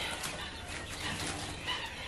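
Young quail chicks peeping faintly in a brooder, with light rustling of wood shavings. The soft little chirps, with no loud peeping, are the sign of content chicks that are warm and fed.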